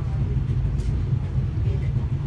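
Steady low rumble of a passenger train running, heard from inside the coach as it rolls slowly alongside a station platform.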